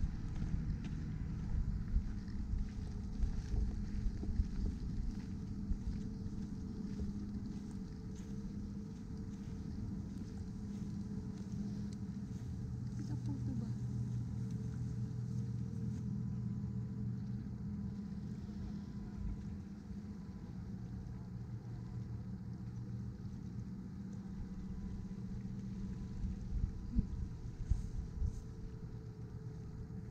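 A van engine idling, a steady low hum with a few fixed pitches that changes little.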